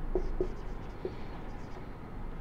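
Marker pen writing on a whiteboard: a few short strokes as a word is written.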